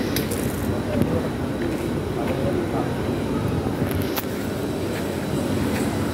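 Street background noise: a steady low rumble with indistinct voices mixed in.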